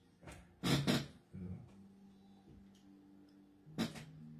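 A few brief, soft handling noises, the loudest about a second in and another near the end, over a faint steady hum.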